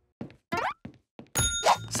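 Cartoon sound effects: a few quick hits and a short rising boing-like glide, then a bright bell ding about one and a half seconds in.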